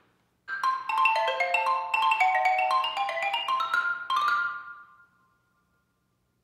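Marimba played with mallets: a quick run of single struck notes, about six a second, dipping lower then climbing higher, ending on a high note that rings on for about a second before dying away.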